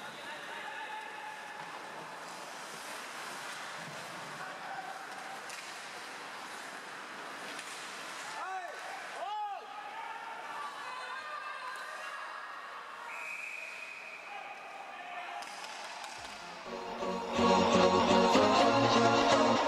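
Ice rink ambience during a hockey game: crowd chatter in a large hall with skates and sticks on the ice and a few knocks, and a steady high tone for a couple of seconds past the middle. Loud pop music comes back in near the end.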